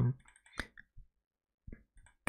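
A few faint, short clicks in a pause between words, the clearest just over half a second in.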